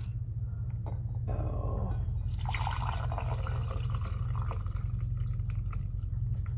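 Vegetable stock poured in a steady stream from a plastic container into a glass measuring cup, filling it; the pour starts about a second in. A steady low hum runs underneath.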